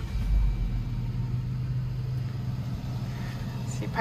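A vehicle driving slowly, with a steady low engine hum and road rumble.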